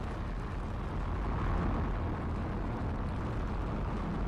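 Falcon 9 first stage's nine Merlin engines running during ascent: a steady, deep rumble, with stage one propulsion nominal.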